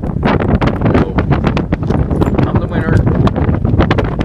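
Wind buffeting the microphone, with frequent small clicks and clinks of metal coins being slid, picked up and stacked on a rock.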